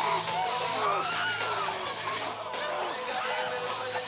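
Voices crying out, wavering in pitch, on an old, distorted video recording, over a steady low hum.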